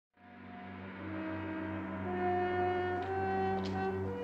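Orchestral film score: slow, held brass notes over a steady low drone, starting just after the opening.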